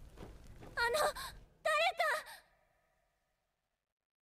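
A high, wavering voice from an anime soundtrack gives two short cries about a second apart, over a faint low rumble.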